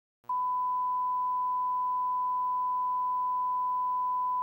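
A steady 1 kHz reference test tone, the line-up tone that goes with colour bars, starting a moment in and holding one unchanging pitch.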